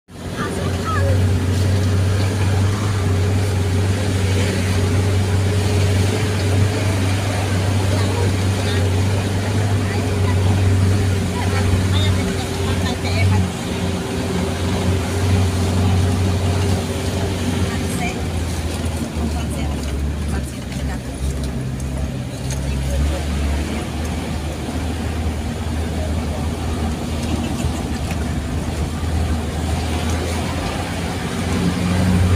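Vehicle engine running steadily, heard from inside the cab as it drives up a hill road: a low drone with a whine above it. About two-thirds of the way through, the engine note drops to a lower pitch.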